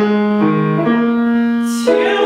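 Grand piano playing slow sustained chords with a moving bass line, the harmony shifting twice and a fresh chord struck near the end.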